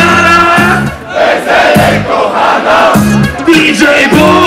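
Live hip-hop concert heard from within the crowd: loud music through the PA, with a short held melodic phrase repeating about every second, and the audience shouting along.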